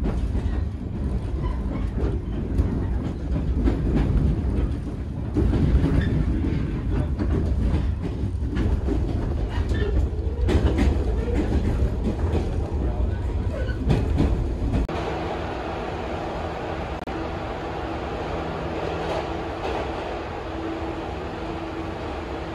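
A train running on the rails, a loud low rumble with occasional knocks. About fifteen seconds in, it changes abruptly to a quieter, steady hum with a low tone.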